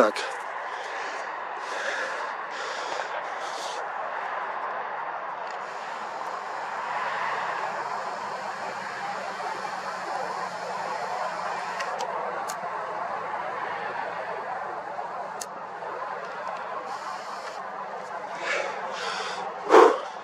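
Steady hum of distant road traffic that swells and fades as cars pass, with several short breaths close to the microphone.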